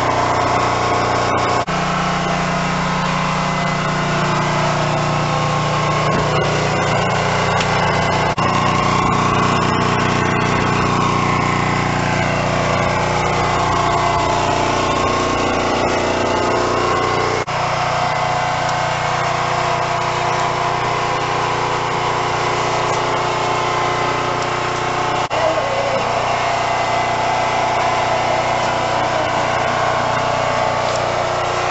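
Diesel railcar engine running steadily, heard from inside the car as a continuous low drone with a pitched hum over it. The sound shifts abruptly about two seconds in and again past the middle.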